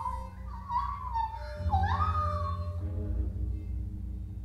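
Free improvised music for voice and live electronics: a thin, wavering high tone that glides about, dips and swoops back up around halfway, then fades out near the end, over a low pulsing electronic drone.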